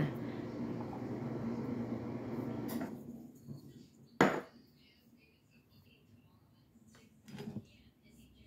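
A spoon stirring yeast and sugar into warm water in a glass measuring cup, a steady scraping and swishing for about three seconds. It is followed by a single sharp knock about four seconds in and a brief clatter near the end as kitchen bowls are handled.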